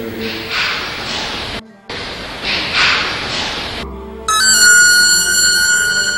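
Trailer soundtrack: two swelling, breathy hisses with a brief dead-silent break between them, then a sustained high ringing tone with several pitches that comes in suddenly about four seconds in.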